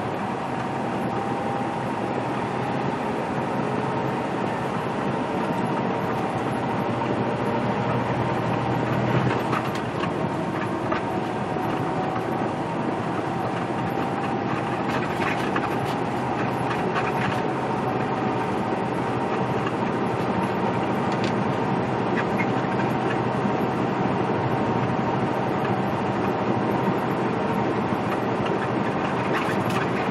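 Inside a semi-truck's cab while driving: a steady drone of engine and road noise, with a faint whine that drifts slowly in pitch and scattered light rattles.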